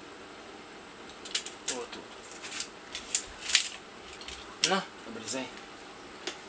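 Irregular sharp clicks and knocks of a plastic pipe, tape measure and hand tools being handled and set in a bench vise. The loudest comes about three and a half seconds in.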